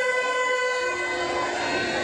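Conch shells blown in long, steady, horn-like notes, several overlapping at different pitches; one note stops about a second in and a lower one carries on.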